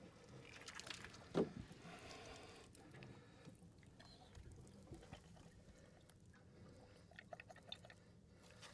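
Faint wet handling of a large catfish in a landing net as it is squeezed to burp out gas swelled from deep water, with one short louder sound about a second and a half in.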